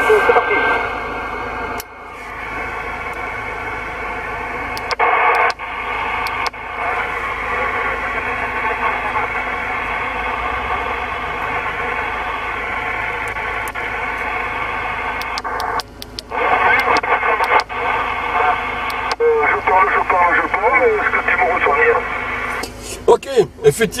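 CB radio receiver on 27 MHz playing band-limited hiss with garbled voices coming through it, while the radio is retuned and switched to LSB single sideband. It sounds like searching for the other station. A few clicks and brief dropouts are heard as the settings change.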